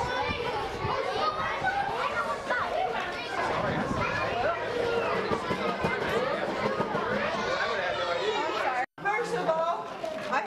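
A crowd of children chattering and calling out all at once, a dense babble of overlapping young voices with no single speaker standing out. The babble breaks off suddenly for a moment near the end.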